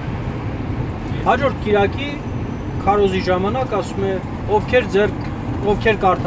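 A person talking over the steady low rumble of a car on the move, heard from inside the cabin.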